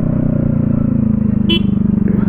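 Scooter engine running with a steady low drone that sinks slightly in pitch as the scooter slows down. A short horn toot sounds about one and a half seconds in.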